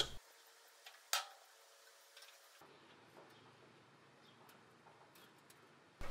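Near silence, broken by one sharp click about a second in, with a few faint ticks later on.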